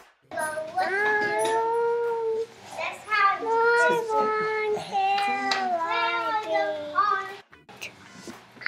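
A young child singing in a high voice, holding long notes that slide between pitches, in a few phrases with short breaks between them.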